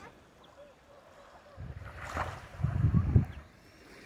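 Wind buffeting the microphone in two low, rumbling gusts about one and a half and three seconds in, the second louder.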